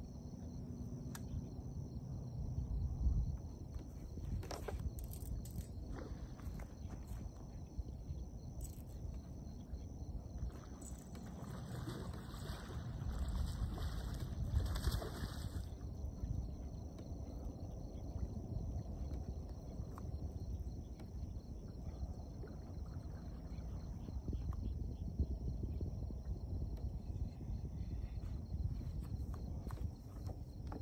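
Quiet open-air ambience on a lake: a steady low rumble, with a few faint clicks and a louder rushing stretch about halfway through.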